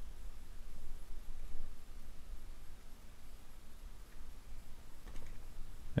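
Faint clicking and scraping of a box cutter blade trimming deer hair along a bucktail jig's head, over a low steady hum.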